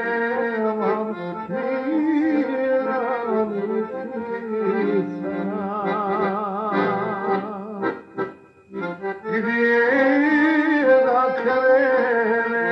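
Live recording of a Serbian folk song, with an accordion playing the lead melody. The music drops away briefly about eight seconds in, then comes back in full.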